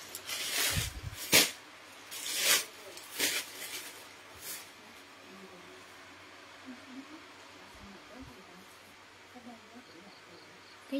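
Silk fabric rustling and swishing as a length of it is handled and shaken out: three or four quick swishes in the first half, the first with a soft thud, then it goes quiet.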